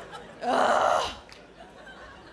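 A single short, loud gasp about half a second in, lasting about half a second.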